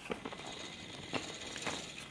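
An effervescent tablet fizzing as it dissolves in a glass of water under a layer of sunflower oil, giving off carbon dioxide: a steady hiss with a few sharp clicks.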